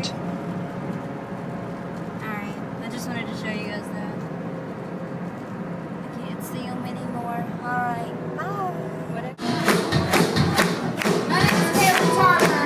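Steady car-cabin road hum with faint singing. About nine seconds in it cuts suddenly to loud live pop music from the crowd at a concert: a female singer with a band.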